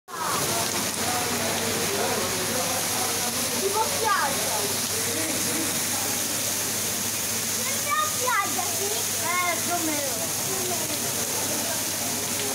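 Heavy cloudburst rain pouring down onto a paved street: a steady, loud hiss of falling rain and splashing water.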